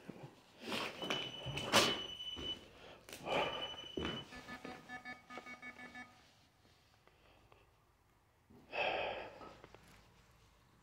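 A few knocks and thuds with a high steady electronic beep sounding twice over them, then a second or two of rapid electronic chirping. A short louder burst follows near the end.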